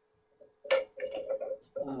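A tall glass-jar prayer candle picked up off a table: a sharp glass clink about half a second in, then a few lighter clinks and knocks as it is handled.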